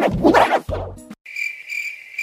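Cricket-chirping sound effect starting a little past halfway: a steady high trill pulsing about four times a second, the stock comedy cue for an awkward silence. A short bit of voice from the reaction clip comes just before it.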